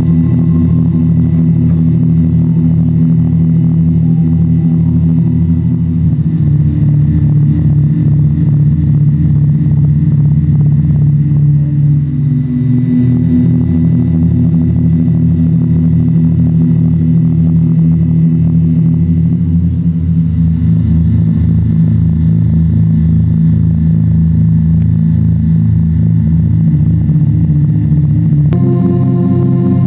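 Low electronic drone of an industrial soundtrack, with a fast pulsing throb. Its pitch shifts a few times, about 6, 12 and 20 seconds in.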